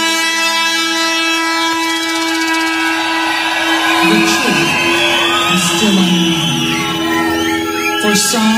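Electronic dance music without a beat: a long held synthesizer chord, with gliding, warbling synth sounds coming in about halfway through.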